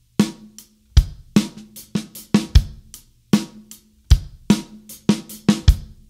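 Acoustic drum kit playing a rock beat on bass drum, snare and hi-hat, with extra sixteenth-note strokes from the hands worked into the groove. Heavy kick strokes land about every second and a half, and the playing stops just before the end.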